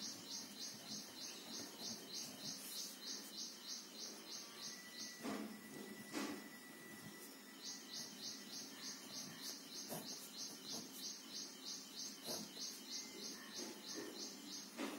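An animal chirping in a rapid, very even series of short high-pitched pulses, about three and a half a second, in two long runs with a pause of about two seconds in the middle. A few faint knocks sound around the pause.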